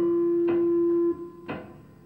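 Free-improvised music on electronic keyboards. A loud, steady held tone cuts off abruptly just after a second in, while plucked-sounding notes with ringing tails sound about once a second.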